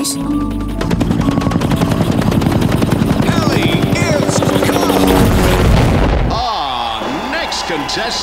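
Cartoon helicopter flying over, its rotor chopping in a fast, even pulse over background music. About six seconds in the chopping gives way to electronic music with swooping tones.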